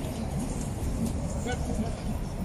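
Street ambience: a steady low rumble of traffic and wind on the microphone, with indistinct voices of people nearby and a brief call about a second and a half in.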